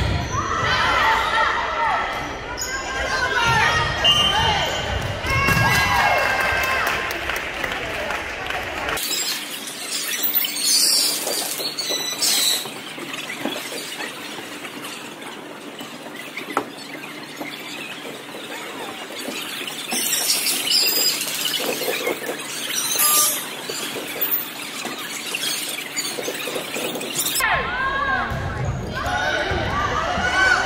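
Sneakers squeaking on a gym floor during a volleyball rally, short sharp squeaks over voices in the hall, with bursts of crowd shouting in the middle stretch.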